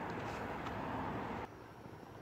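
Steady rushing background noise with no distinct event, which drops away suddenly about one and a half seconds in.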